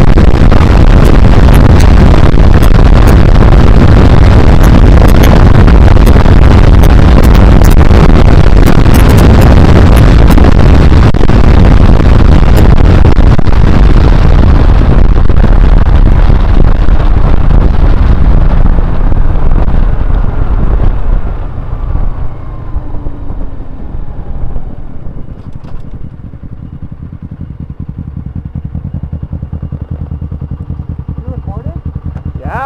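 Honda CBR125R's single-cylinder 125 cc four-stroke engine at road speed under heavy wind rush on the camera microphone, loud and saturated. About twenty seconds in, the noise dies away as the bike slows to a stop, the engine note falling and settling to a quieter idle.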